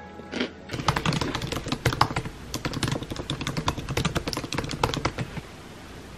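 A rapid, irregular run of light clicks and taps, several a second, starting about a second in and stopping shortly before the end.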